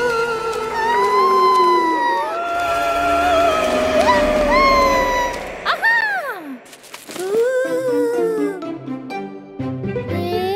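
A cartoon ghost's wailing 'oooo' voice in long, wavering tones that slide up and down, over spooky background music. About six seconds in the wail sweeps sharply up and down, and then the music carries on with short low notes.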